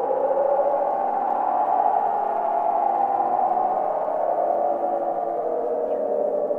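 Sustained ambient drone music: many held tones layered into a dense, steady chord that swells slightly in the middle.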